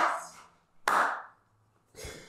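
Two hand claps, about a second apart, each fading out quickly.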